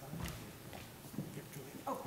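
Faint footsteps and a few soft knocks of people moving about on a stage, with low murmuring in the room. A short "oh" is spoken right at the end.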